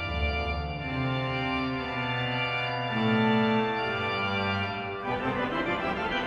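Romantic pipe organ by Théodore Puget playing solo: full held chords over a low bass, changing about once a second, moving into a busier, quicker passage near the end.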